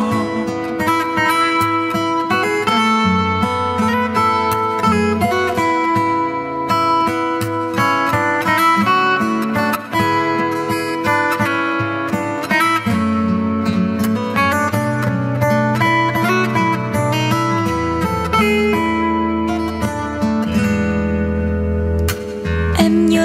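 Acoustic guitar playing an instrumental passage: picked notes in quick succession over a moving bass line, with no singing.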